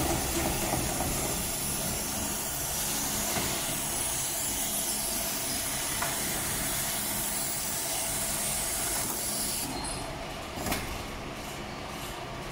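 Steady low hum and hiss of an industrial sewing machine's motor left running between seams, with a single sharp click a little before the end as the heavy sewn workpiece is handled; the high hiss falls away in the last couple of seconds.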